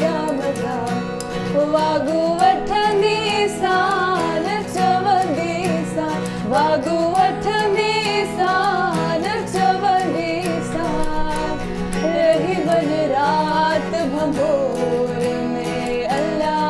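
A woman singing while strumming an acoustic guitar. The sung melody rises and falls over steady chords without a break.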